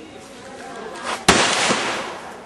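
A single gunshot about a second in: a sharp crack followed by a short echoing tail that fades over well under a second.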